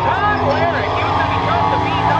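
Drag cars' engines running at the start of the strip, a steady low rumble, under indistinct voices of people nearby.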